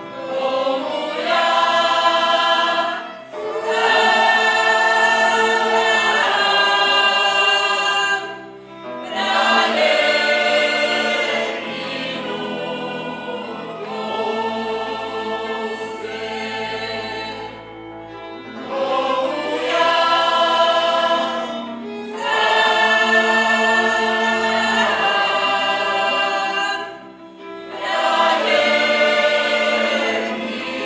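Slovak folk ensemble of men and women singing a folk song together in long sustained phrases, with brief breaks between phrases and a softer passage in the middle.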